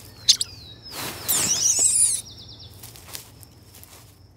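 Outdoor nature ambience of bird calls and insects over a steady low hum. A sharp click comes just after the start, then a loud swell of noise with high twittering calls about a second in, followed by a short, fast, high trill.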